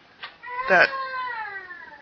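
A cat meowing once: a single long call that falls slowly in pitch and fades.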